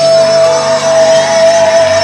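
Live soul band music played loud through a PA, with one long note held steady throughout.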